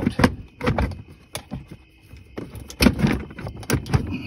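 Irregular plastic clicks and knocks as a ride-on toy's gearbox is worked out of its plastic body by hand, with the loudest knocks about three seconds in.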